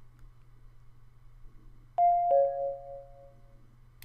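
A two-note descending electronic chime, a higher ding then a lower dong, ringing out and fading over about a second and a half: the Logitech Harmony software's confirmation sound that the Pink infrared command has been learned. Under it there is a faint steady hum.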